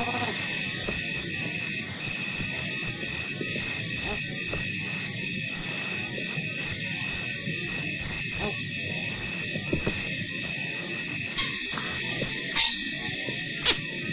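Wildlife documentary soundtrack: several steady high-pitched tones held over a low rumble, with two short high calls about two-thirds of the way through.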